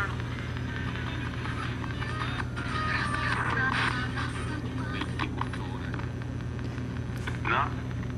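A steady low hum runs under faint, indistinct voice-like fragments, the clearest a brief one near the end.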